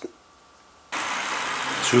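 Almost silent for about a second, then an abrupt switch to a steady, even hiss of background noise; a voice begins at the very end.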